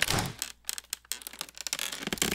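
Dry, irregular crackling and clicking, a sound effect of termites chewing through wood.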